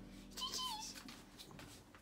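A household pet's single short, high cry, falling in pitch, about half a second in.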